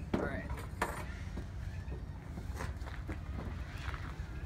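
Wind buffeting the microphone in a steady low rumble, with a few sharp knocks and scuffs as a man climbs up onto a wooden carport roof.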